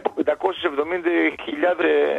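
Speech only: a man talking in Greek without a break.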